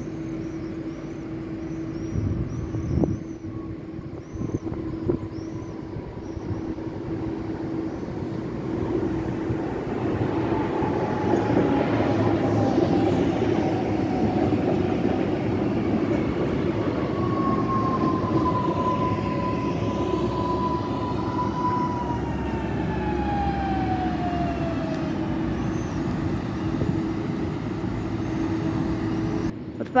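Electric multiple unit train moving past close by, its wheels rumbling on the rails. The rumble builds to its loudest in the middle, and a motor whine slides downward in pitch as the train goes by.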